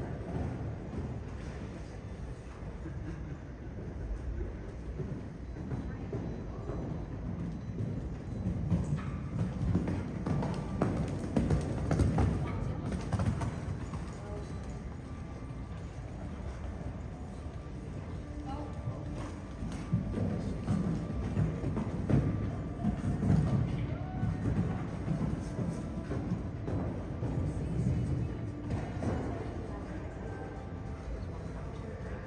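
Horse cantering on sand footing, hoofbeats thudding, with background music and indistinct voices.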